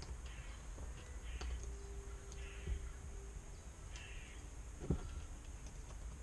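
Small metal and plastic parts of a hand-assembled rig being handled on a desk: faint scrapes and light clicks, with a sharper click about five seconds in.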